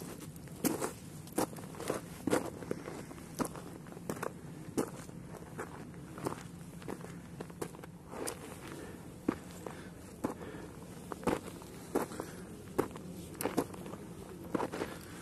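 Footsteps crunching on a loose stony dirt trail, at a steady walking pace of roughly one step a second.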